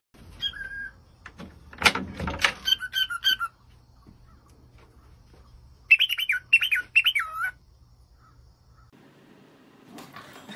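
Cockatiel whistling and chirping in two short runs, a brief one about three seconds in and a louder run of up-and-down whistled notes around six to seven seconds. Before the first, a few knocks and rattles of handling.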